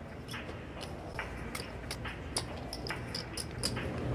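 Quiet card-room ambience: a low steady hum with scattered faint, irregular clicks of poker chips being handled at the table.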